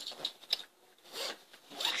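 Zipper of a plush frog pencil case being pulled, in a few short scratchy runs with rubbing of the fabric.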